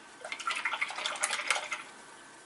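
Paintbrush swished and tapped in a jar of rinse water, a quick run of small splashy clicks lasting about a second and a half.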